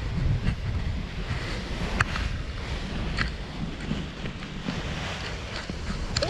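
Wind buffeting an action camera's microphone during a tandem paraglider's low final approach and landing: a steady low rumble, with a few sharp clicks about two and three seconds in.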